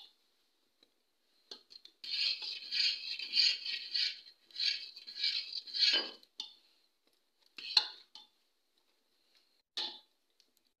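A metal ladle stirring and scraping round a steel pot of butter boiling down to ghee, for about four seconds, starting two seconds in. It is followed by two short clinks of the ladle against the pot near the end.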